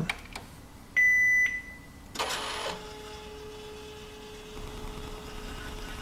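Canon PIXMA MX350 inkjet all-in-one powering on: a single short beep as its ON button is pressed, then its print mechanism starts up with a brief noise followed by a steady motor hum for about three seconds.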